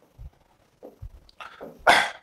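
Chalk drawing quick vertical strokes on a blackboard: a few short scrapes and light knocks of the chalk against the board, the loudest stroke near the end.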